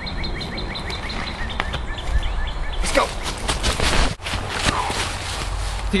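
Woodland ambience with a small bird chirping over and over in quick short calls. About halfway through this gives way to a few seconds of rustling, crackling noise, broken by a short dip in level.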